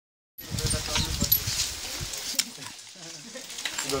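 Hand-cranked sugarcane press crushing cane stalks between its rollers: a dense creaking clatter with a couple of sharp cracks, busiest in the first two seconds and easing off after.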